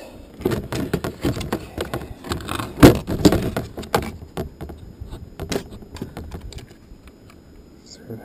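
Hands working a homemade bird trap, a plastic basket and the bent-wire trigger and metal pan of a stripped mouse-trap base, close by: a run of clicks, rattles and light knocks, loudest about three seconds in and thinning out toward the end.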